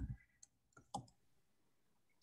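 Near silence with a few faint, short clicks, the clearest about a second in.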